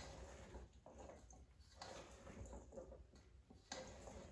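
Near silence, with a few faint clicks and soft squishes of a spoon stirring dressed pasta salad in a stainless steel mixing bowl.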